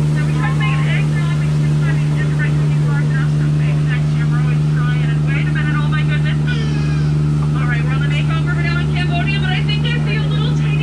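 Jungle Cruise tour boat's motor running with a loud, steady low hum, with busy, quick higher chirping sounds over it.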